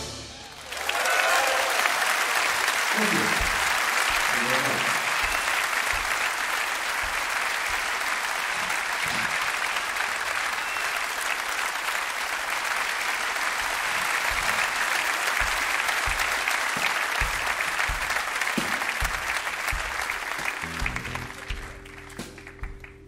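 Concert audience applauding, with a few shouts, after a tune ends; the applause starts about a second in, holds steady and fades near the end as a keyboard begins to play.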